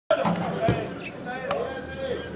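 Two thuds of a football being kicked on a grass pitch, the first about two-thirds of a second in and the second about a second later, under players' shouting voices.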